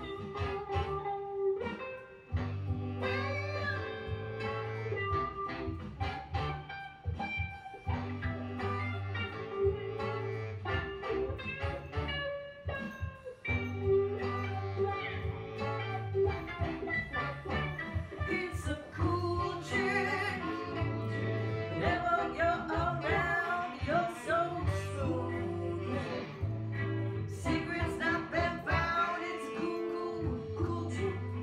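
Unmixed blues-groove studio recording playing: guitar over a repeating bass line, with a singing voice.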